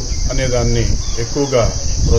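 A steady, unbroken high-pitched insect chorus, under a man talking.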